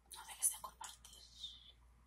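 A woman whispering close to the microphone. The whisper is broken by several crisp mouth clicks over the first second, with a longer hiss about a second and a half in.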